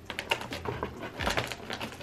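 Plastic takeout food containers being handled and opened: a rapid, irregular run of light clicks and taps.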